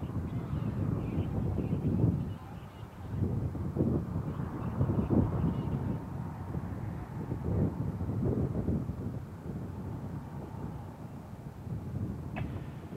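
Wind buffeting an outdoor microphone: irregular low rumbling gusts that swell and fade every second or two.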